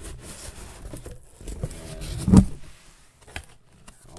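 Cardboard shipping box being opened by hand: the flaps rustle and scrape, with a loud thump a little over two seconds in and a single click near the end.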